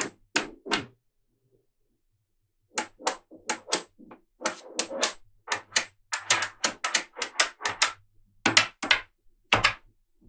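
Small magnetic balls clicking and clacking as strips and blocks of them are snapped together and pressed onto a flat panel. The clicks come in quick, irregular runs, several a second, with a gap of about two seconds near the start.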